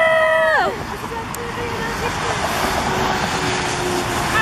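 A high, held shout from a woman for the first half second or so, then the steady hiss of traffic on a wet road.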